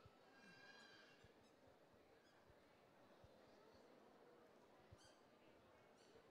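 Near silence: faint room tone, with a faint high-pitched sound in the first second and a few soft clicks.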